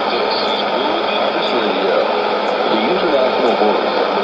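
Shortwave AM broadcast on 12015 kHz heard through a portable receiver's speaker: a faint, noisy voice under steady hiss. A faint tick comes about once a second.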